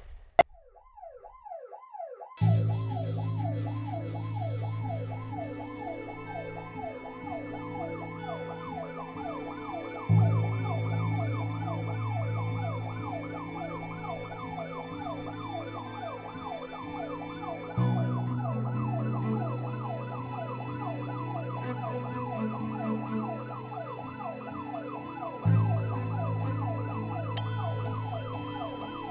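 A siren cycling rapidly up and down in pitch, with background music joining about two seconds in: low held chords that change every seven or eight seconds under higher sustained tones.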